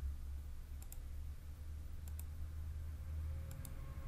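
Computer mouse clicking three times, each click a quick double tick, about a second apart, as the on-screen view button is toggled. A low steady hum runs underneath.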